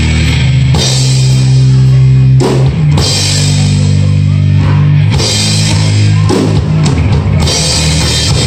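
Live pop-punk band playing an instrumental passage on electric guitar, bass guitar and drum kit: held chords that change every second or two, broken by short stops and drum hits.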